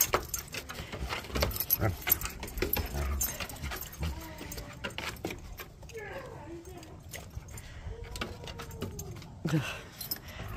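Two wolfdogs play-fighting: collar tags jingling and clinking in quick irregular clicks as they mouth and wrestle. A few faint dog vocalizations come in the middle and second half.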